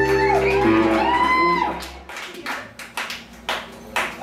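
Live rock band: electric guitars and bass ringing out a sustained chord, with a note bending upward. The music stops about halfway through, leaving a few scattered sharp clicks and knocks.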